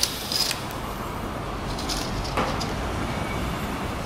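Steady low rumble of city street traffic heard from an apartment balcony, with a brief knock about two and a half seconds in.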